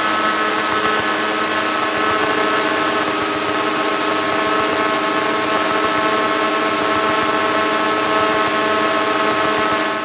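Piper Cherokee's piston engine and propeller running steadily at taxi power, heard from inside the cockpit as an even drone with a constant pitch.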